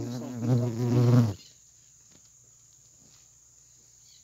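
A flying insect buzzing close to the microphone for about a second and a half, its pitch wavering as it passes, then cutting off.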